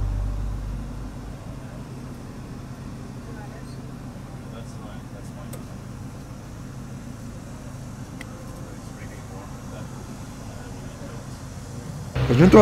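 Low, steady rumble of light city street traffic, with cars passing through an intersection. Background music fades out in the first second.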